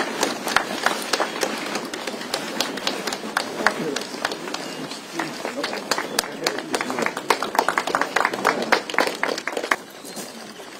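A small group clapping, the separate hand claps distinct, over chatter from the crowd. The clapping stops suddenly near the end.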